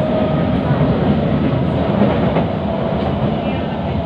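Singapore MRT train in motion, heard from inside the carriage: a steady running noise of the wheels on the track.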